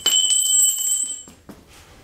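Metal hand tools clinking as they are put away, with a sharp metallic strike at the start and one piece ringing for about a second before it dies out.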